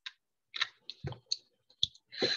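A few short, soft clicks scattered irregularly, with two brief low knocks, one about a second in and one near the end.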